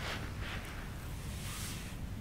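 Low, steady wind rumble on the microphone, with a few faint soft rustles.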